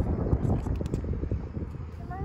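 Hard plastic wheels of a child's big-wheel ride-on trike rolling and rattling on a concrete sidewalk: a dense low rumble with a few sharp clicks, easing off near the end.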